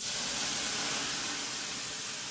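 Water on the hot stones of a sauna stove hissing into steam (löyly), a steady hiss that sets in suddenly.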